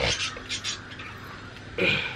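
Two short, high animal cries, one at the start and one near the end, with a quieter stretch between.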